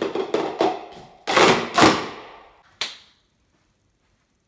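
Plastic sport-stacking cups clattering in quick succession as they are stacked and downstacked at speed, with two louder clatters about one and a half seconds in and a single sharp click near three seconds, after which the sound stops.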